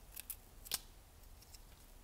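A few faint, sharp clicks from small objects being handled at a workbench, the loudest a little under a second in.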